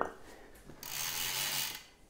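Bicycle drivetrain ratcheting for about a second as the crank is turned by hand, the rear hub's freewheel pawls clicking in a fast run.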